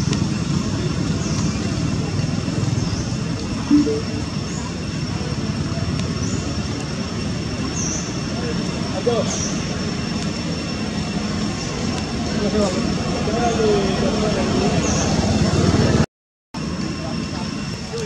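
Outdoor background: a steady low rumble like road traffic, with indistinct distant voices and occasional faint high chirps. The sound cuts out for about half a second near the end.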